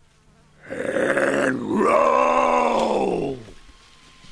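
A drawn-out strained vocal cry, like a groan of effort, lasting about two and a half seconds. Its pitch arches up and then slides down at the end.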